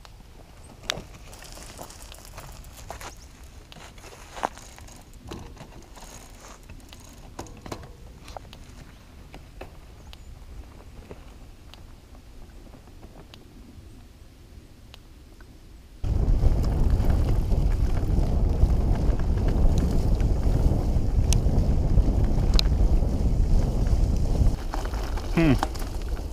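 Quiet outdoor ambience with scattered faint clicks, then, about two-thirds of the way in, a sudden loud rumble of wind on the microphone and tyres on gravel as a loaded touring bicycle is ridden along the track. There is a brief squeak near the end.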